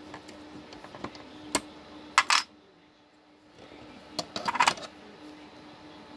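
Metallic clicks and clatter as the CPU heatsink of an HP BL460c G6 server blade is unscrewed with a Torx driver and lifted off, in two louder bursts about two seconds in and about four and a half seconds in.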